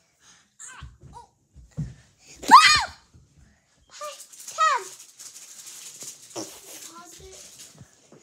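Children's high-pitched squeals and shrieks: one loud squeal about two and a half seconds in and a falling shriek a couple of seconds later, among short vocal noises, with a steady hiss through the second half.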